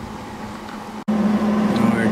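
A steady low mechanical hum with a constant low tone. It drops out for an instant about a second in, then comes back louder.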